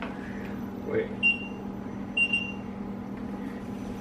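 Two short, high electronic beeps about a second apart from a King Song 16S electric unicycle that has just been switched on and is being handled, over a faint steady low hum.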